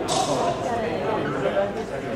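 Indistinct voices of several people talking at once, low conversation in a large hall.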